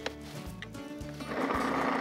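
Background music, then a food processor's motor starts a little past halfway and runs steadily, pureeing a thick mixture of ground pumpkin seeds and grilled vegetables.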